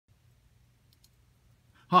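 Near silence with a faint low hum and two faint clicks about a second in, then a man starts speaking right at the end.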